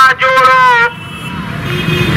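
A voice calls out for under a second, then street noise with a vehicle engine running.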